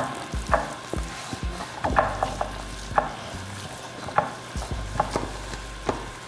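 A silicone spatula scraping wet cornbread dressing out of a stainless steel mixing bowl into a baking dish, with irregular sharp taps and dull knocks as the bowl and spatula meet the dish.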